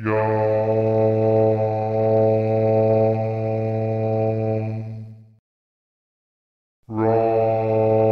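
A low voice chanting a Tibetan Buddhist element mantra: one syllable held on a single steady pitch for about five seconds, fading out. After a short silence, the next syllable begins near the end.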